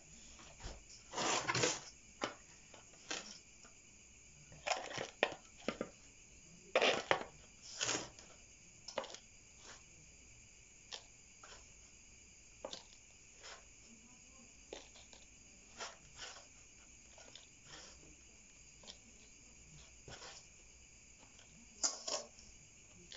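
Metal spoon scraping and scooping moist potting soil out of a metal basin and dropping it into a plastic pot: a string of irregular scrapes and soft clicks, louder in the first eight seconds and sparser after.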